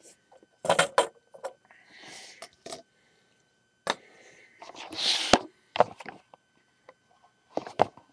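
Handling noise: scattered knocks and clicks as things are moved about on a tabletop, with a louder rustle about five seconds in that ends in a sharp click.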